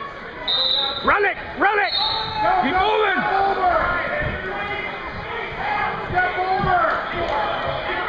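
Wrestling spectators and coaches shouting in a gym hall, with a couple of loud yells about a second in and more calling after. A few dull low thuds come in between.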